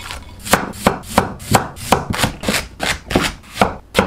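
Chinese cleaver chopping vegetables on a wooden cutting board in a steady run of sharp chops, about three a second, starting about half a second in.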